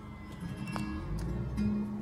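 A song with plucked and strummed guitar, playing on the car's stereo.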